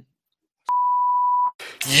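A single steady electronic beep: one pure pitch held for just under a second, starting and stopping sharply after a moment of dead silence.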